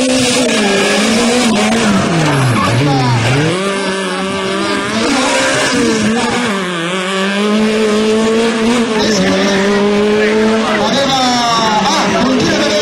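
Small Fiat Seicento rally car's engine revving hard through tight turns. The revs drop sharply and climb again several times as it brakes and powers out of the corners, with tyres squealing.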